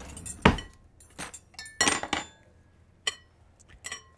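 Metal forks clinking against a glass salad bowl while salad is tossed and served: a handful of irregular clinks, the loudest about half a second and two seconds in.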